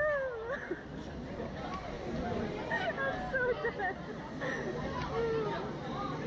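A rider's high, wavering wordless cry right at the start, then scattered short voice sounds, over steady background noise.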